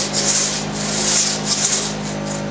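Long crosscut saw pulled back and forth through a log by hand, each stroke a rasping hiss of teeth through wood, in a quick run of strokes. A steady low hum runs underneath.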